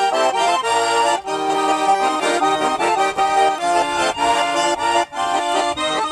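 Nizhny Novgorod garmon, a Russian button accordion, playing a lively folk tune. A quick-moving melody runs over sustained chords.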